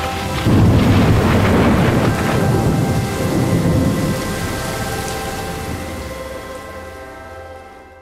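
A long, low rumble of thunder with a storm's hiss, under a held music chord, fading away over the last few seconds.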